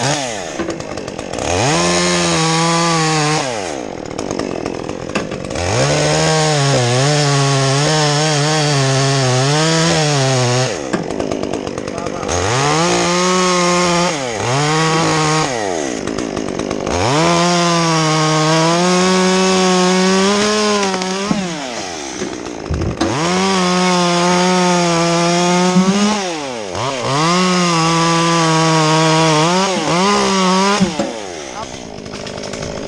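Stihl MS 201 two-stroke chainsaw cutting through a rigged limb in a series of full-throttle bursts of one to four seconds. Its pitch sags under load in the cut and falls away between bursts.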